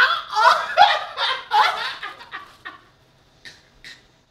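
A woman laughing in a run of short, high-pitched bursts that fade out about three seconds in.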